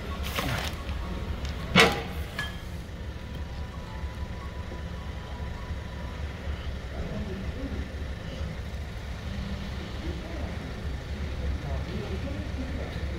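Steady low hum of workshop background noise, with one sharp knock about two seconds in and a few lighter clicks around it.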